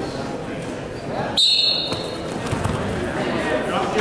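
A referee's whistle blows once, a short high blast about a second and a half in, over crowd voices and shouts in a gym. It signals the start of wrestling from the referee's position.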